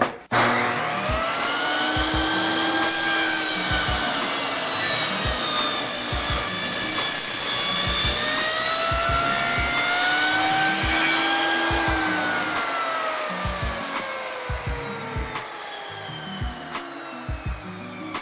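Table saw starting up and ripping a taper along a block of two-by-two pine held in a clamped jig, the blade tilted to about 12 degrees; the whine wavers as the blade cuts. From about two-thirds of the way in, the pitch falls steadily and the sound fades as the blade spins down.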